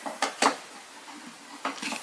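Light clicks and knocks of wooden toy ice cream scoops handled inside a Melissa & Doug toy ice cream counter's display case: two just after the start, a quieter stretch, then a few more near the end.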